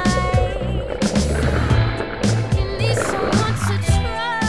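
Background pop music: a sung vocal over a steady beat.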